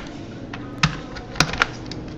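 Computer keyboard keys being typed: a few separate, unevenly spaced keystrokes as a file name is entered.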